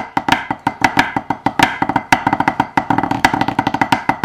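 Snare drum sticks played on a practice pad: a fast run of pipe band drumming strokes with accents, each stroke ringing briefly with a pitched tone.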